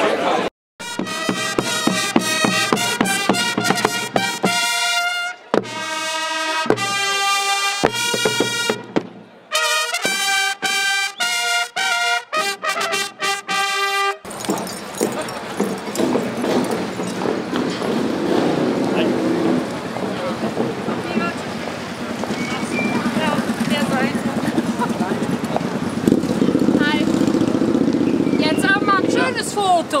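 A brass band playing, with clear trumpet and trombone notes and short pauses between phrases. The music cuts off abruptly about halfway through and gives way to outdoor crowd chatter and street noise.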